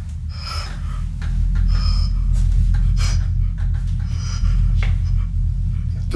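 A young man breathing heavily, with short panting breaths about once a second, over a loud steady low hum.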